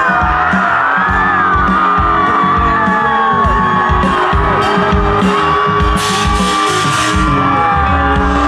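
Live band playing loud rock music over a festival PA, recorded on a phone from inside the crowd: a pounding drum beat under a gliding melody line, with whoops from the crowd and a bright crash about six seconds in.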